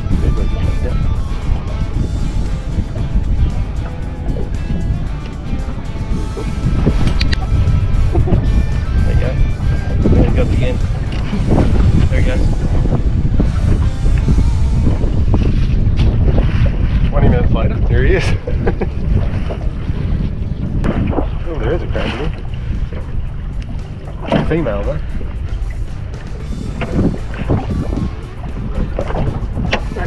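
Wind buffeting the microphone on a small boat on open water, with scattered knocks and rattles from the crab pot being handled on deck.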